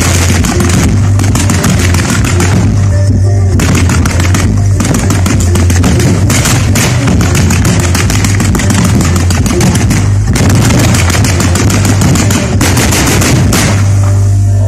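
Fireworks firing nonstop in rapid volleys, a dense run of sharp reports and crackle, over loud music.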